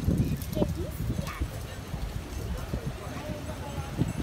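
Indistinct voices over a run of irregular low knocks.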